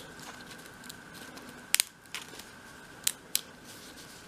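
Close-up small crafting sounds as fabric is worked on a miniature wicker basket: faint rustling with three sharp clicks, one about two seconds in and two close together near the end.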